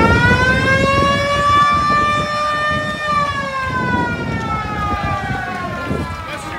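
A siren winding up to a high, held pitch, then slowly sliding down in pitch over the last few seconds.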